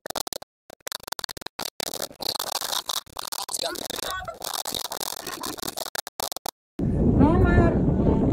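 Wind buffeting the microphone, choppy and cutting in and out, with faint distant speech. Just before the end it changes abruptly to a loud, steady low wind rumble with a brief voice.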